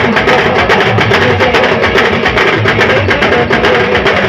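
Adivasi rodali band music: a loud melodic lead over a fast, steady drum beat.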